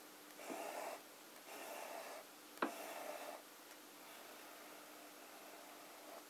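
Fountain pen's fine, flexible 14k gold nib drawn across paper in faint scratchy strokes, three about a second apart, then quieter.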